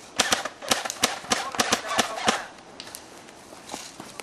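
Airsoft gun firing a quick string of about a dozen sharp shots over two seconds, then stopping.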